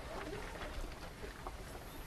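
Faint bird calls over a quiet, low background rumble.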